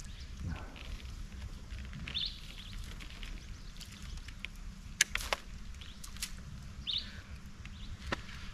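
A bird giving short chirps, once about two seconds in and again near seven seconds, over a low steady rumble. Two sharp clicks come about five seconds in.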